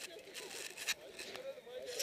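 Faint, indistinct voices of people talking, with a few short scraping noises in the first second.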